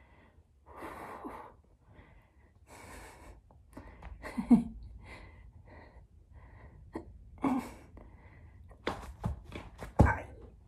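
A woman breathing hard under strain, with forceful breathy exhales and gasps every second or two from the effort of holding a long plank. The loudest is a voiced gasp about four and a half seconds in, and a quick cluster of short sharp sounds comes near the end.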